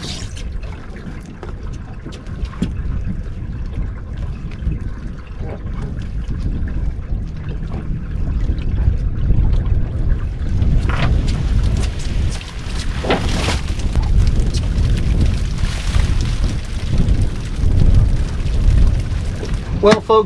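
Wind rumbling on the microphone, with water splashing and dripping a few times as a cast net full of bait fish is pulled up out of the water beside the boat.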